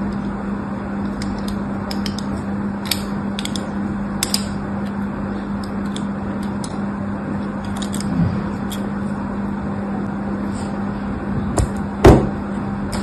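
A needle scoring fine crosshatch lines into a bar of soap, giving light scratches and scattered sharp ticks over a steady background hiss and low hum.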